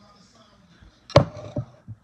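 A single sharp knock a little over a second in, followed by two fainter thumps.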